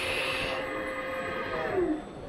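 Assembly-line machinery running with a steady mechanical hum and hiss. A motor whine falls in pitch near the end as a movement winds down.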